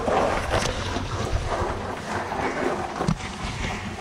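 Rumbling, rustling handling noise on the camera's microphone as the person carrying it crawls and scrambles over wet cave rock, with scuffs of hands and clothing against stone.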